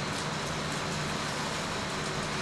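Steady background noise: an even rumble and hiss with a low hum underneath, no distinct events.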